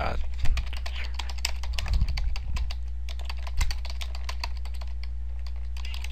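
Fast typing on a computer keyboard: a quick, continuous run of key clicks, over a steady low hum.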